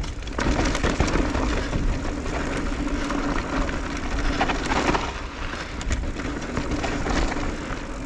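Electric mountain bike rolling down a rocky dirt trail: knobby tyres crunching and rattling over dirt and stones, with many small knocks, under steady wind rumble on the chest-mounted camera's microphone. A steady low hum runs underneath.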